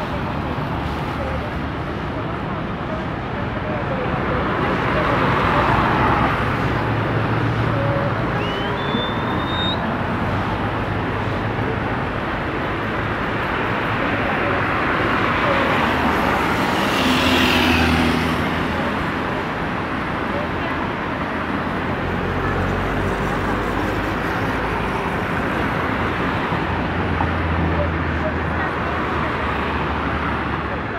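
Road traffic passing on a city street, with a steady babble of many voices. A short rising whistle comes about nine seconds in, and the noise swells briefly just past the middle.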